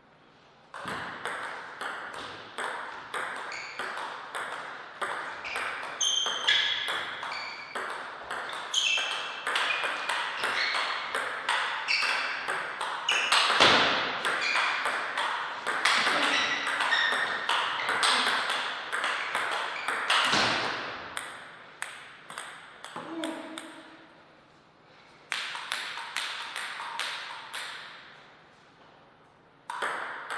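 Table tennis ball in a long rally: sharp clicks of the ball on the rubber bats and the table, about two a second, stopping about 21 s in. A shorter run of ball clicks follows a few seconds later, and another starts near the end.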